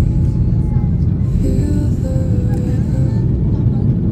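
Airliner cabin noise during the takeoff run and liftoff: the jet engines at takeoff power give a loud, steady low rumble.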